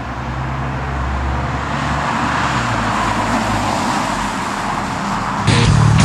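2014 Mazda 3's 2.5-litre four-cylinder engine, fitted with a MagnaFlow stainless-steel cat-back exhaust, as the car drives past: engine note and tyre rush swell to their loudest about halfway through, then fade. Music cuts back in near the end.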